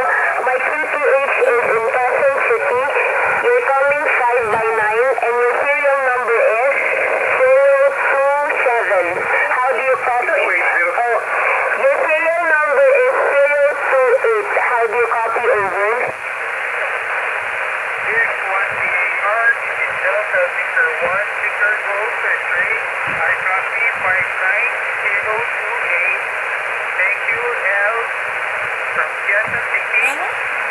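Voices on lower sideband on the 40 m amateur band, heard through an HF transceiver's speaker: garbled and unintelligible, cut off above about 3 kHz, with steady hiss behind them. About sixteen seconds in, the strong signal drops away, leaving weaker voices in the static.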